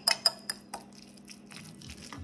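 Metal fork clinking and scraping against a white ceramic bowl while mixing flaked canned tuna with chopped red onion. There are several sharp clinks in the first second, then only softer ticks.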